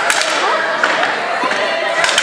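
Roller hockey play in a gym hall: a few sharp clacks of sticks striking the ball and each other over the rolling of inline skates, with voices of players and spectators in the background.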